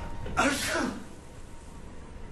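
A man sneezing once: a sudden loud, voiced burst about half a second in that lasts about half a second, its pitch falling as it ends.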